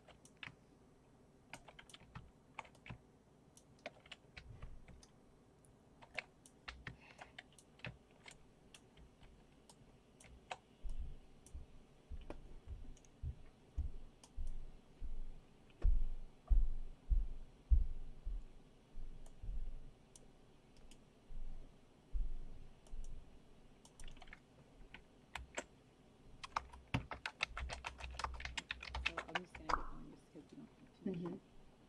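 Computer keyboard keys clicking in scattered presses, with a stretch of dull thumps in the middle and a quick run of key presses near the end. This is typical of someone steering a VR avatar with the movement keys.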